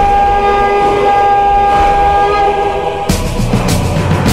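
A long, steady horn-like tone in the promo soundtrack. About three seconds in it cuts off as loud rock music with hard drum hits begins.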